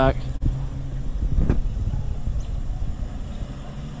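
Infiniti G35 sedan's 3.5-litre V6 running at low speed, a low engine hum that fades steadily as the car moves off.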